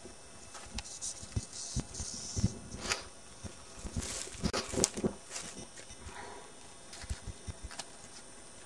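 Irregular rustling, knocking and handling noise from movement over dry leaf litter and pine needles, with a few short hissy bursts and a louder cluster about four to five seconds in.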